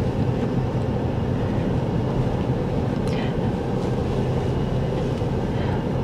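A moving vehicle's steady, low engine and road rumble.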